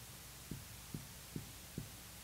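Dry-erase marker tapping against a whiteboard while writing: four faint, soft low knocks at an even pace, about two a second, over a faint steady hum.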